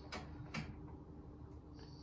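Two faint clicks from a plastic oven control knob on an electric cooker being turned into position at its detent, with a faint steady hum underneath.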